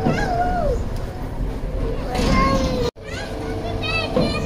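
High-pitched children's voices calling out in short, sliding tones over a steady background hum. The sound cuts out for an instant about three seconds in.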